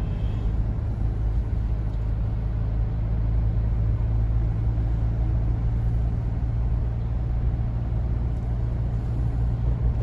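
Steady low rumble of a car's engine and tyres on the road, heard inside the cabin while cruising.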